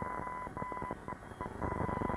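A faint, steady high-pitched tone that drops out briefly a few times in the middle, over a low hum, in the gap between two adverts on an off-air VHS recording.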